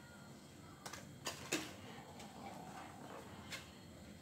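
Five or so light clicks and taps of a plastic protractor being handled and checked, the loudest pair about a second and a half in.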